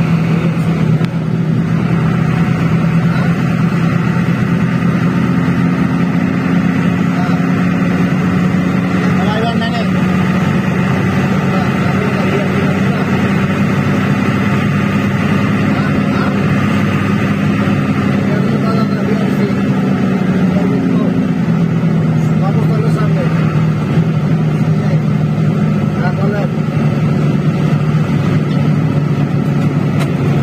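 Coach engine running steadily at highway speed, heard from inside the moving bus: a deep, even drone over tyre and road noise. Its pitch eases slightly lower about twenty seconds in.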